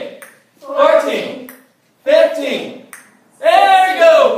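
A group of high, young voices calling out together three times, about a second and a half apart, each call falling in pitch at its end: children shouting counts in unison during push-ups.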